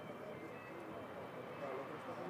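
Faint background voices of people chattering, with no one speaking close to the microphone.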